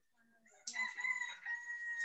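A rooster crowing once: one long, nearly level call that starts about two-thirds of a second in and carries on to the end.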